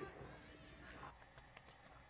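Near silence: room tone with a few faint, sharp clicks in the second half.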